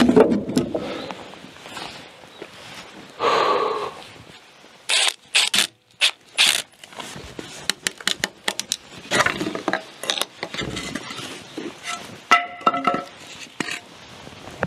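Timber-framing work: a series of sharp knocks and scrapes of wood and tools, with a hammer striking a steel nail puller in short metallic clinks, a few of them ringing.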